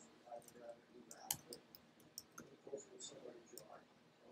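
Faint, irregular clicks of typing on a computer keyboard, with one sharper click about a second and a third in.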